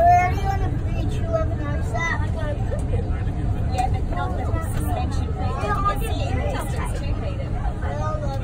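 Indistinct voices talking throughout, over the steady low rumble of an electric metro train running along its track, heard from inside the front of the train.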